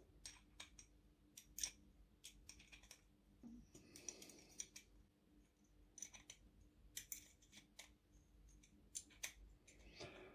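Faint, scattered clicks and light scraping of small metal parts being handled as fingers fit and snug clamps onto a metal 1/14-scale RC truck wheel, with a short scratchy rub about four seconds in.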